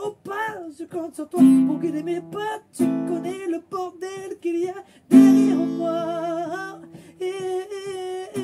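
Steel-string acoustic guitar strummed in chords, with a voice singing a slow song along with it. The strongest chords come about one and a half, three and five seconds in.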